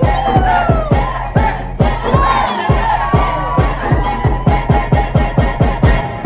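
Dance music with a fast kick-drum beat, about three to four beats a second, and a crowd cheering and shouting over it.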